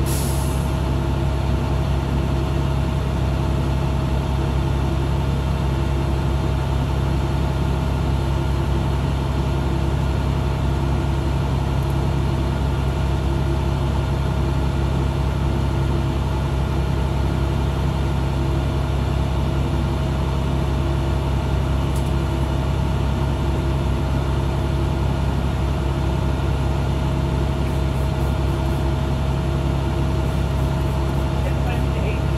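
School bus engine idling steadily, heard from inside the cabin at the driver's seat, with a short hiss of air right at the start.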